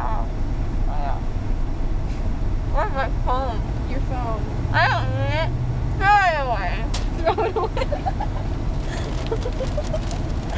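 Steady low rumble of a car cabin on the road, with a girl's high, sliding vocal sounds without clear words several times around the middle.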